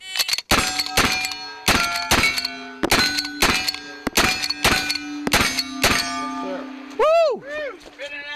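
A brass-framed 1866 Yellowboy lever-action rifle fired rapidly with black powder loads, each shot followed by the ring of a hit steel target, the ringing hanging on after the last shot. A man's brief shout about seven seconds in.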